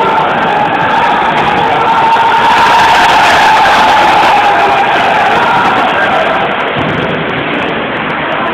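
Crowd of spectators shouting in a large, echoing sports hall, a dense wash of voices that swells to its loudest a few seconds in and eases off toward the end.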